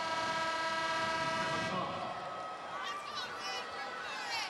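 Basketball arena horn sounding one steady blast of a bit under two seconds, then cutting off, most likely the scorer's table signalling a substitution. Arena crowd noise and voices follow.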